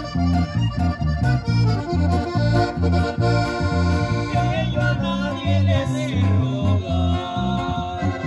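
A live regional Mexican band playing an instrumental passage: a button accordion carries the melody over strummed acoustic guitar and an electric bass in a steady rhythm.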